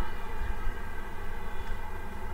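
A steady low hum with faint background noise and no distinct sounds: a pause in the talk of an online lesson.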